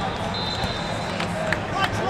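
Crowd chatter in a busy wrestling arena, with a thin steady high tone in the first half and three sharp knocks in the second half.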